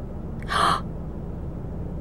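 A woman's short, sharp gasp about half a second in: a quick breathy intake of the moment an idea strikes.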